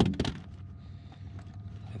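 A sharp clack with a couple of smaller knocks just after, as gear is handled in an aluminum boat, over a steady low hum.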